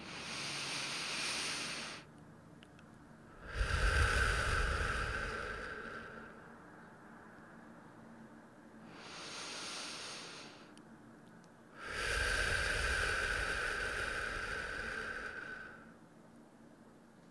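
A woman's slow, deep breaths, in through the nose and out through the mouth: two full breaths, each long exhale louder than the inhale before it.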